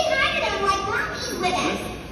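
Children's voices calling out in an audience.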